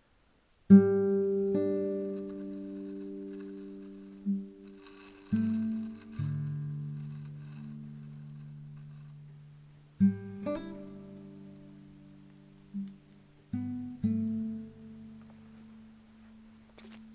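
Background music on acoustic guitar: chords plucked and left to ring out slowly, starting about a second in, with a new chord every few seconds.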